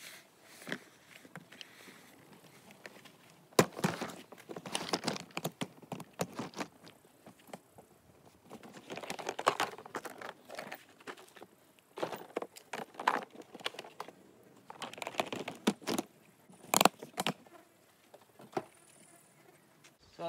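Heavy plastic storage totes and a toolbox being lifted, opened and set down: irregular knocks, scrapes and clatters, with two sharp bangs among them.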